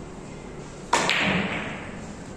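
A single sudden loud thump about a second in, followed by a rushing hiss that fades away over most of a second.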